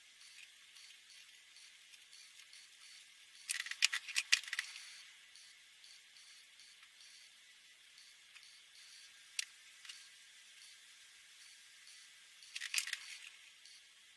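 Marker caps clicking as the felt-tip markers are uncapped and recapped during a pen swap. There are two quick flurries of clicks, about four seconds in and again near the end, with a single click in between. A faint scratch of a marker nib dabbing on paper runs under it.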